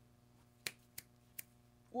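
Three short, sharp clicks about a third of a second apart, the first the loudest.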